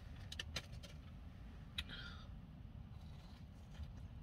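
Faint handling noises, a few small clicks and a brief soft rustle, as a corn dog is taken from its paper wrapper, over the low steady hum of a car interior.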